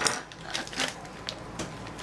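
A few light clicks and clinks as scissors and a plastic snack bag are handled, ahead of cutting the bag open.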